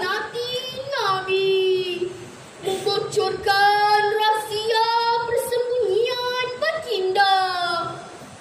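A girl's solo voice singing a slow melody with long held notes, pausing for breath about two seconds in.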